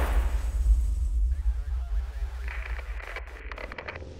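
Cinematic title-sting sound design: a deep boom that opens into a low rumble, with a run of quick glitchy clicks and stutters near the end.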